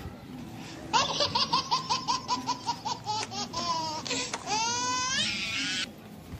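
High-pitched laughter dubbed in as a comic sound effect. It starts about a second in as a quick run of ha-ha-ha, about six a second, and ends in a long rising squeal of a laugh that breaks off just before the end.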